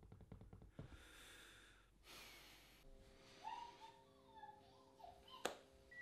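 Near silence: faint room tone with soft breath-like noise, then a faint steady hum from about three seconds in, and a single sharp click about five and a half seconds in.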